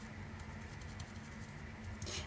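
Small round brush dabbing paint through a plastic stencil onto canvas: faint, irregular soft taps.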